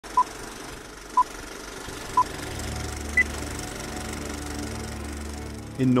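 Four short electronic beeps one second apart, three at the same pitch and a fourth, higher one, like a countdown. A low music drone swells in under them about two seconds in.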